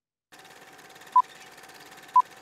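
Film-leader countdown sound effect: after a brief silence a steady hiss with a faint constant hum starts suddenly, and a short, sharp beep sounds about a second in, the once-a-second tick of the countdown.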